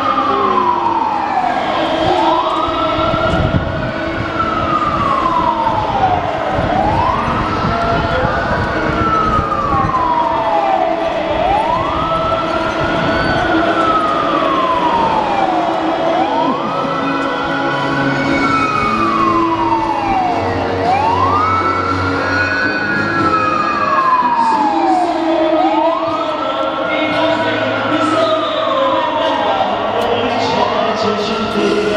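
Wailing fire-truck siren on a small electric ride-on fire truck, its pitch climbing quickly and then sliding slowly back down, repeating about every five seconds.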